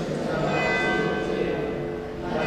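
Church bells ringing, their strokes overlapping and ringing on.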